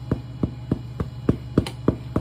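A hand drumming a steady beat on a tabletop, about three and a half taps a second, over a low steady hum.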